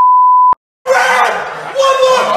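A single loud, steady electronic beep lasting about half a second. After a brief silence, people start shouting and laughing around a bench press in a gym.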